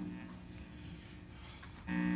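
Electric guitar: the notes still ringing stop at the start, then it is faint until a chord is struck near the end and rings on.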